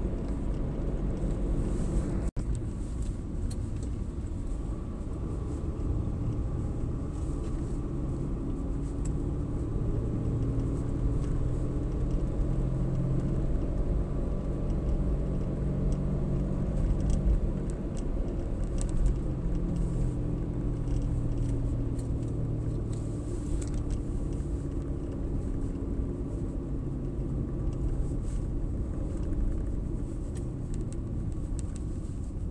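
A car's engine and tyre noise, heard from inside the cabin while driving: a steady low rumble whose engine note drifts gently up and down. The audio drops out for an instant about two seconds in.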